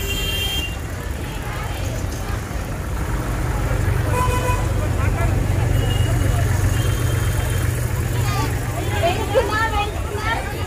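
Busy street ambience around a marching crowd: a steady low rumble of traffic with scattered voices, a few short horn toots in the middle, and voices growing clearer near the end.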